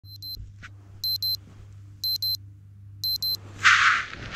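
Digital alarm clock beeping in high double beeps, about one pair a second, four times. Near the end the beeping stops and a short, loud rustle follows.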